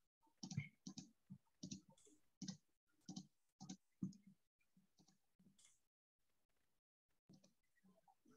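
Faint, irregular clicks of a computer keyboard and mouse picked up by a desktop microphone, two or three a second for about four seconds, then only a few very faint ones.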